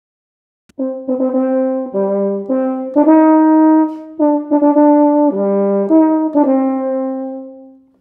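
Euphonium playing a short phrase of an etude in a dotted-eighth–sixteenth rhythm, demonstrating the correct way to play it. It comes in about a second in with a string of short, separate notes and ends on a longer held note that fades out.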